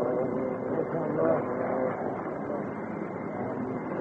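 A crowd of listeners murmuring and calling out between phrases of a live Quran recitation. It comes through a muffled, narrow-band old recording with hiss.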